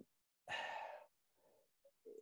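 A person sighing: one audible outward breath about half a second in, lasting about half a second, during a pause in speech.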